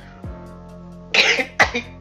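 Background music with sliding bass notes plays throughout. About a second in, a person gives a short cough in two bursts.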